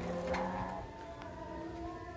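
Kite hummer (sendaren) droning in the wind: several steady tones sounding together, each shifting a little in pitch as the pull on the kite changes, with a brief click about a third of a second in.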